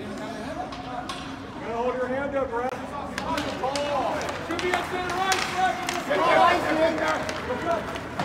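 Several voices shouting and calling out over one another at an ice hockey game, getting louder from about two seconds in. Short sharp clacks of sticks and puck on the ice sound through the shouting.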